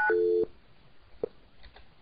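Cisco IP Communicator softphone keypad tone for the last digit 9 of 1999, a steady two-note beep that stops just after the start. It is followed at once by a brief, lower two-note telephone call-progress tone. The rest is quiet apart from a faint short pip or two as the call to voicemail connects.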